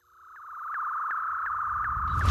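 Synthesized outro sound effect: a steady electronic tone fades in and holds, with a light tick about three times a second. A low rumble begins to swell near the end.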